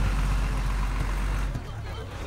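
A bus's diesel engine running with a steady low rumble under street noise. The rumble drops away about one and a half seconds in.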